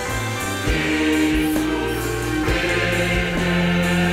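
Mixed choir singing long held chords over a church orchestra of strings, hammered dulcimers, keyboard and drum kit, with a drum beat about once a second.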